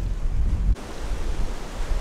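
Surf washing over a pebble beach, with heavy wind rumble on the microphone that cuts off abruptly under a second in. After that the surf goes on as a steady wash.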